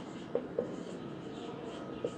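Marker pen writing on a whiteboard: faint strokes with two short ticks in the first second.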